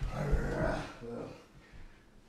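A thud of feet on the rug as one partner lunges for the other's leg and she sprawls it back, with a brief grunt-like vocal sound of effort that fades within about a second.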